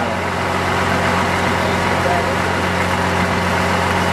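A boat motor idling with a steady low hum, under an even hiss.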